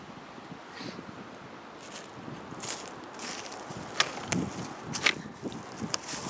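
Footsteps and rustling in dry leaf litter on the forest floor, building from about two seconds in, with a few sharp clicks and knocks about four and five seconds in.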